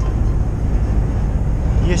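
Steady low rumble of a Volvo truck cruising at motorway speed, heard inside the cab: engine and road noise together.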